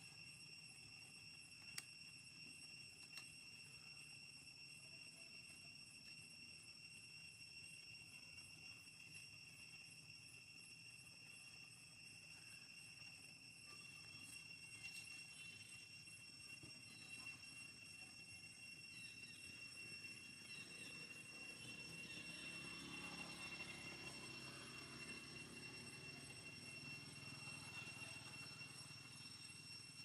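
Near silence: faint outdoor ambience with a steady high-pitched hum, growing slightly busier after about twenty seconds.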